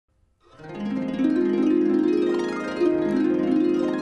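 Harp music starting about half a second in, with plucked notes ringing over one another.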